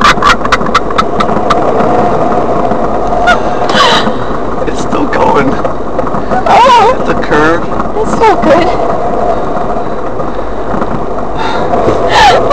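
Car cabin noise while driving: engine and tyres on the road, a steady rumble with a faint hum.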